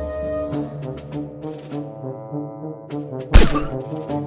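Background music of held notes over a pulsing beat, cut by one loud sudden thump a little over three seconds in.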